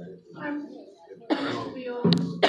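A woman clearing her throat into a handheld microphone, a rough burst in the second half.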